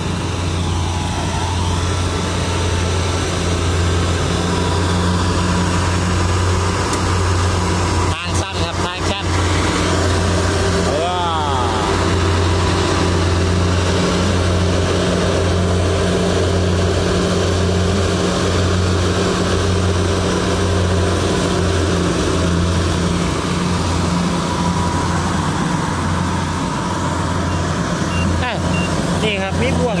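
Kubota rice combine harvester running steadily close by, its engine keeping one constant low hum with no change in speed.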